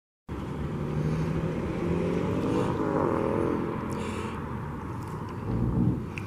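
An engine running steadily, its pitch rising a little and falling again around the middle, with a brief hiss near the end.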